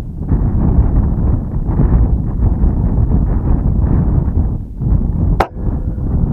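Strong wind buffeting the microphone in a continuous low rumble. One sharp crack near the end is the shot of a pre-charged pneumatic air rifle.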